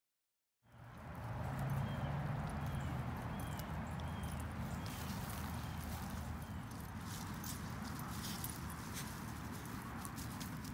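Dogs moving about on grass, light rustles and clicks over a steady low hum, starting suddenly about half a second in.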